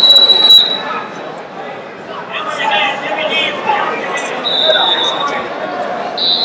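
Two referee's whistle blasts, one lasting about a second at the start and a shorter one about four and a half seconds in, over constant crowd chatter and shouting in a large hall.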